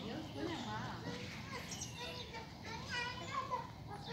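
Indistinct background chatter of children's voices, with no words clear enough to make out.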